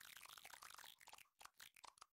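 Near silence with a faint, rapid crackle that thins into a few scattered clicks about halfway through and stops at the end.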